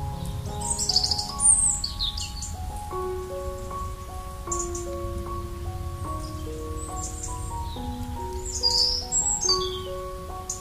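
Soft, slow piano music with a layer of songbirds chirping over it; the birdsong comes in two short bursts of quick, high, sweeping chirps, about a second in and again near the end.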